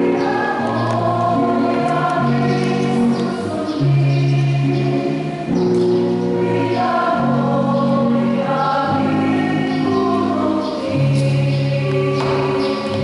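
Church choir singing, the voices holding long notes that change about once a second.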